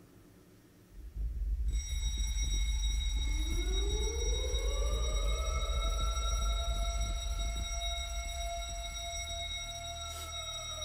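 Cinematic sound design from a music video's soundtrack. A deep rumble comes in about a second in, then a steady high-pitched ringing tone. A second tone slides upward over a few seconds and then holds.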